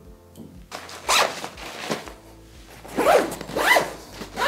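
Zipper on a GORUCK GR1 backpack pulled in about four quick strokes, the last two loudest, over background music.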